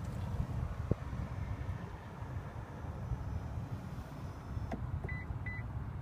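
Electric motor of a 2015 Lexus NX 300h's power-folding rear seat running steadily as the seat back folds down. There is a click about a second in and another near the end, followed by two short high beeps.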